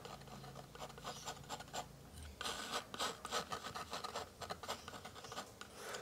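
Steel palette knife scraping and dragging oil paint thin across a canvas panel, a run of faint scratchy strokes.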